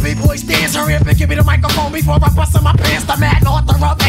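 1990s hip hop music from a DJ mix: a rapped vocal over a drum beat with a heavy, repeating bass line.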